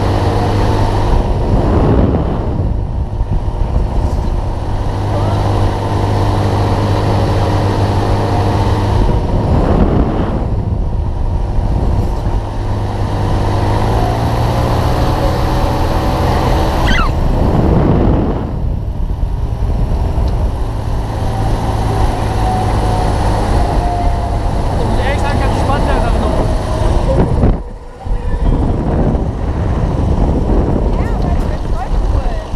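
Mondial Turbine fairground ride in motion, heard from on board: a steady motor hum under wind rushing over the microphone, which surges about every eight seconds as the arm swings through.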